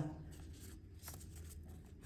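Faint rustling and crinkling of a small strip of paper handled and folded by hand, with a few light ticks.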